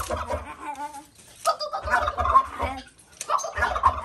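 Male turkey gobbling in its cage, three gobbles about a second and a half apart.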